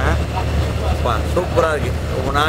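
Steady low rumble of a moving sleeper bus, heard from inside its berth cabin under a man's short spoken phrases.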